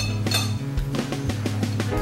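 Background music with a steady bass line and short plucked notes.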